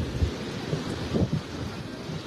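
Wind buffeting the microphone in gusts, a low rumbling with irregular bumps, over a steady hiss of surf.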